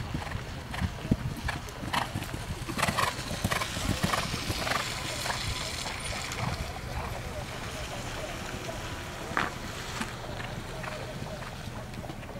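Hoofbeats of a horse cantering on grass turf, as irregular soft thuds that come thickest in the first few seconds, over indistinct background voices.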